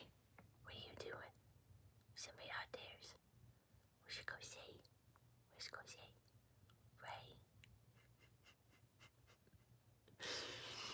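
Near silence broken by five faint whispers about a second and a half apart, the last one just past seven seconds in.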